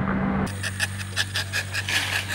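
After a cut, outdoor field ambience: a rapid, even, high-pitched pulsing chirp, about ten pulses a second, over a steady low hum.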